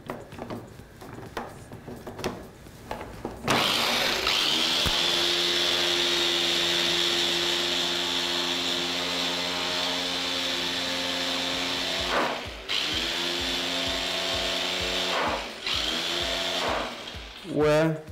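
A small electric press-top chopper runs in three bursts, whipping whipped-cream powder with a little milk into a foam for topping. It gives a steady motor whine that spins up at the start of each burst: first a long run of about eight seconds, then a shorter run and a brief one. A few light knocks come as the chopper is set up before the first burst.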